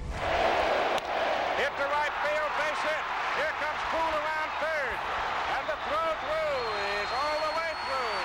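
Stadium crowd noise from an archival baseball broadcast: a steady roar of a large crowd with many voices shouting and yelling over it, and a thin high steady tone near the end.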